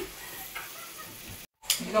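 Steady hiss-like background noise with a few faint clicks. It cuts off abruptly at an edit about one and a half seconds in, and a voice starts just after.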